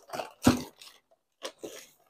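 A few short, scattered crunching and rustling noises from packaging being handled, as a crankshaft is taken out to be shown.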